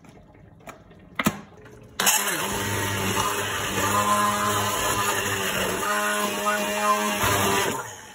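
A knock about a second in, then a hand-held immersion blender switches on about two seconds in and runs steadily while puréeing chunky tomato sauce in a pot, its motor hum shifting as the blade moves through the sauce, and cuts off just before the end.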